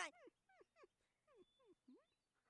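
Cartoon dog whimpering faintly: a run of short whines, each one falling in pitch.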